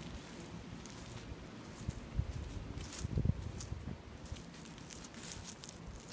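Footsteps on grass over a quiet outdoor background, with a few low thumps loudest about three seconds in.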